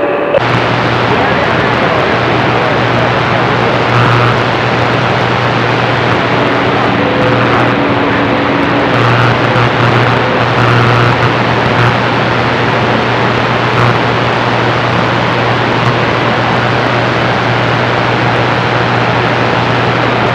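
CB radio receiver putting out loud, steady static hiss with a low hum underneath, the noise of a band open to long-distance skip while a signal holds the meter up.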